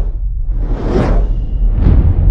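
Cinematic logo-sting sound design: a loud, steady deep rumble with a whoosh that swells and fades about a second in, and a second, shorter whoosh near the end.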